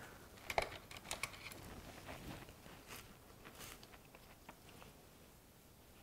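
Faint handling sounds of gloved hands with a small paintbrush and a paperclay piece coated in embossing powder: a few light clicks and rustles, most of them in the first couple of seconds, then softer ticks of brushing that fade away.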